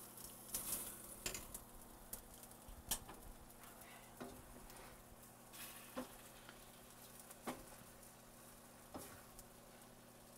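Faint sizzling of orecchiette, broccoli rabe and sausage in a hot stainless-steel sauté pan, with about eight scattered light knocks as drained pasta is dropped in from a mesh strainer and stirred with a wooden spoon against the pan.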